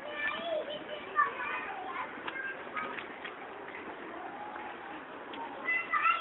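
Children's voices chattering and calling, strongest in the first second or two and again near the end, with a few sharp clicks.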